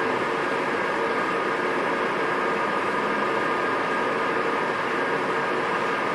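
Steady room tone: an even hiss with a faint hum, no speech.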